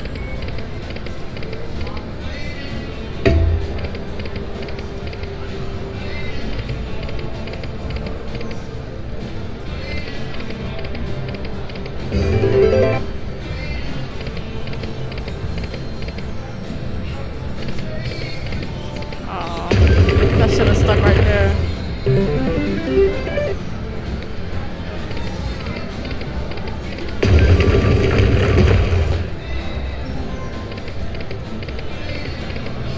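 Aristocrat Lightning Link 'Tiki Fire' slot machine playing its electronic game music and chimes as the reels spin, with three louder jingles as wins are paid and credits added. Voices murmur in the background.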